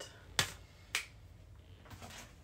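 Two sharp clicks about half a second apart.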